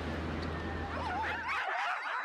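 Several Greenland sled dogs howling, their wavering voices overlapping and rising and falling in pitch, beginning about a second in. Under the start is a low steady rumble that stops abruptly about one and a half seconds in.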